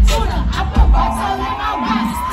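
Live hip-hop concert from within the audience: heavy bass from the PA, with the crowd shouting and singing along in one long held voice across the middle.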